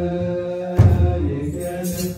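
A group of male voices chanting an Ethiopian Orthodox hymn on long held notes, with one deep beat of a kebero drum about a second in.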